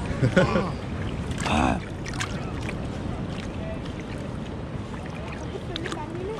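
Shallow sea water lapping and sloshing around a camera held at the waterline, with small splashes and a steady low rumble. A short laugh comes in the first two seconds.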